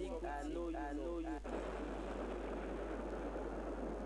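A voice in drawn-out, wavering tones for about a second and a half, then cut off abruptly by a loud, steady rushing noise that holds to the end.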